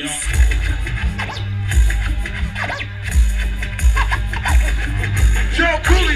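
Hip hop beat with heavy bass kicks played loud over a concert sound system, with a DJ scratching a record over it.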